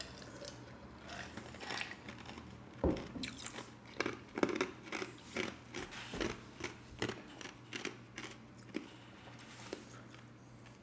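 A person chewing close to the microphone: a run of short, irregular crunches starting about three seconds in and fading out near the end.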